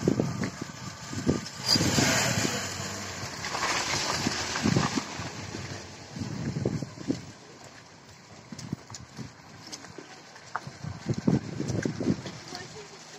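Wind buffeting the microphone in gusts, strongest in the first few seconds, over irregular low rumbles and thumps.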